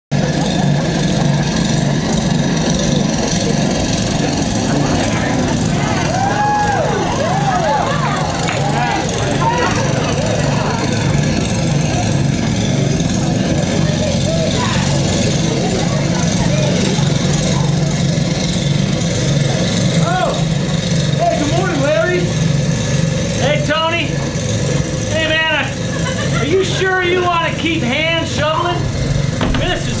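A snowblower's small engine running steadily, with voices over it that grow busier in the last ten seconds.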